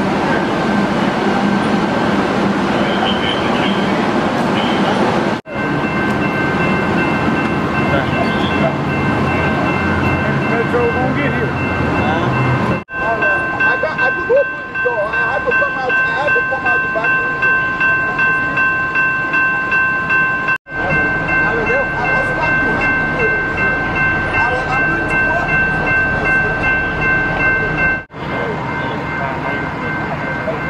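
Steady high electronic tone held on several pitches at once, sounding on through the later clips of an emergency scene at a derailed light rail train, over idling vehicle engines and scattered voices. The first few seconds carry mainly a low engine hum.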